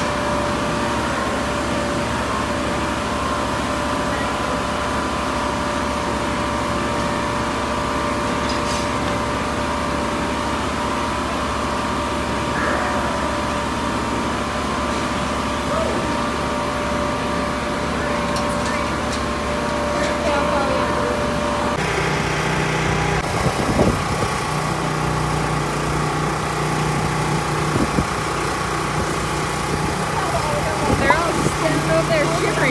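Large barn ventilation fans running with a steady mechanical hum and a constant tone. The hum changes abruptly to a lower, different drone about three-quarters of the way through.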